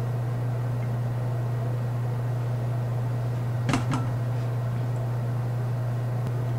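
A steady low hum with a faint hiss over it, with one brief soft sound about four seconds in.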